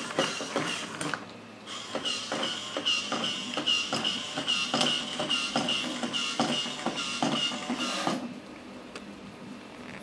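Small 120:1 geared motors whining as 3D-printed toy robots walk. Their plastic legs click on the table about three steps a second. It breaks off briefly about a second in and stops shortly after eight seconds.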